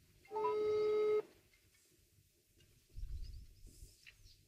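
Telephone tone on the line: one steady electronic beep lasting about a second, as a call is placed. A faint low rumble follows near the end.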